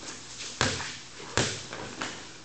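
A basketball dribbled on a bare concrete floor, bouncing twice about 0.8 s apart, each bounce echoing briefly in the garage.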